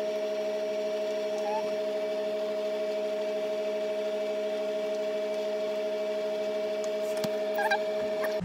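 A steady hum of several held tones that starts abruptly. A few light clicks and knocks come near the end.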